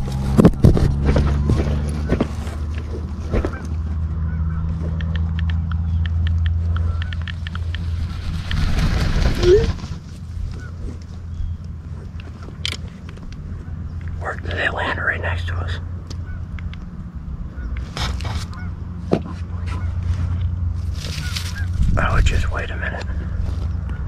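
Geese honking in a few short scattered bursts, over a steady low rumble.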